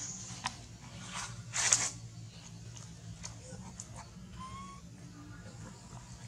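Dry leaf litter rustling and crunching in a few short bursts, the loudest just under two seconds in, over a low steady hum. A faint short squeak a little after the middle.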